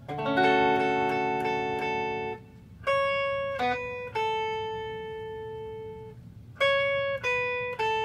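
Ibanez AZES40 electric guitar playing chord-melody: a chord struck and left ringing for about two seconds, then a slow melody of single notes, one held for about two seconds in the middle and three more near the end.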